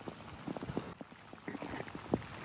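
Hurricane wind and rain buffeting an outdoor microphone: a steady rushing noise with scattered irregular ticks of raindrops striking.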